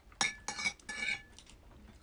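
Light clinks on a ceramic plate while shellfish is picked apart over it: three or four sharp clicks in the first second and a bit, two of them ringing briefly.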